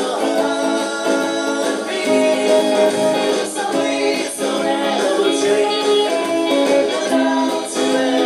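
Stratocaster-style electric guitar played within a song that has singing.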